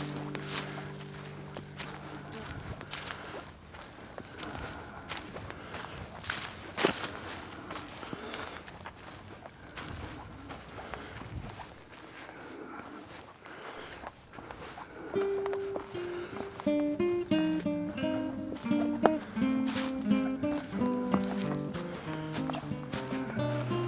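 Footsteps crunching through dry leaf litter on a woodland trail, under a held background-music chord that fades out in the first few seconds. About fifteen seconds in, background music returns as a tune of short notes.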